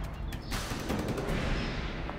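Dramatic soundtrack sound effect of the kind used in TV serials: a few sharp percussive hits, then a loud crash-like hit about half a second in that fades away over the next second and a half.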